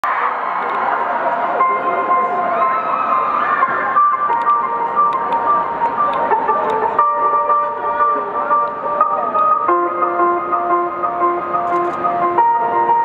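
Live band intro on keyboard: a short high note repeated a few times a second over held chords that change every few seconds. Crowd voices call out underneath, most in the first few seconds.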